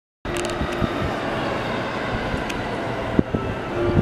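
Steady rumble of rail traffic beside the line, with a few sharp clicks.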